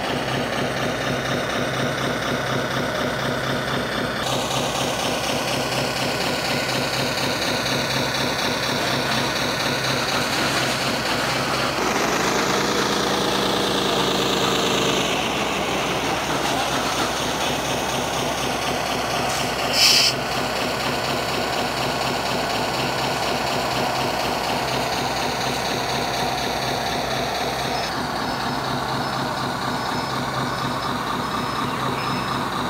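Large RC Caterpillar dump truck's engine sound idling steadily. A louder held tone comes in for about three seconds midway, and there is one sharp click about two-thirds of the way through.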